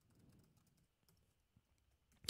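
Very faint computer keyboard typing: a quick run of quiet keystrokes.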